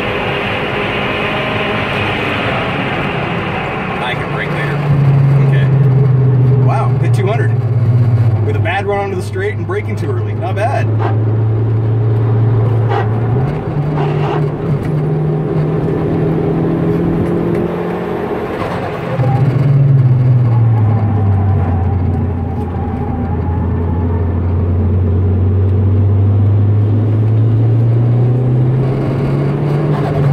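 Turbocharged 2002 Hyundai Tiburon 2.0-litre four-cylinder engine, heard from inside the cabin under track driving. Its pitch jumps and drops several times with throttle and gear changes, then climbs steadily near the end as the car accelerates. Short high wavering sounds come over it a few seconds in.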